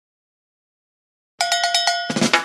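Silence, then about one and a half seconds in a logo sound effect starts abruptly: a steady pitched tone pulsing rapidly, about ten times a second.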